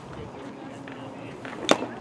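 One sharp crack about three-quarters of the way through as a baseball batter swings at a pitch, over faint background chatter.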